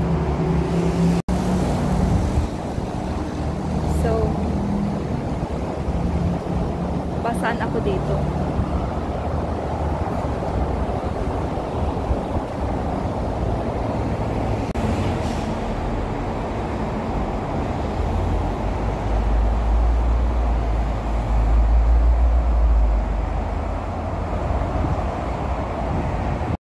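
Steady noise of road traffic, cars and buses, heard from a footbridge above a busy road, with a heavier low rumble for a few seconds about three-quarters of the way through.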